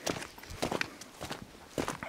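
Footsteps of a person walking outdoors over gravelly, grassy ground, a few separate steps.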